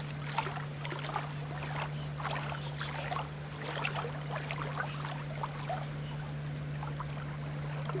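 Small ripples lapping and splashing in shallow lake water, a quick run of irregular little splashes, over a steady low hum.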